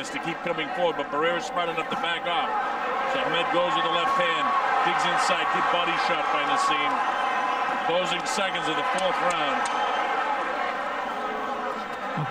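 Boxing arena crowd during a round: many voices shouting and calling over one another at a steady level, with a few short sharp clicks in the middle.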